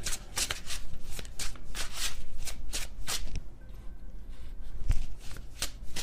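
A tarot deck being shuffled by hand: rapid papery flicks and slaps of cards for about three seconds, a short lull, then a few more flicks near the end.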